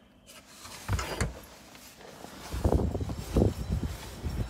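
Two short knocks about a second in, then wind buffeting the microphone as low, gusty rumbling.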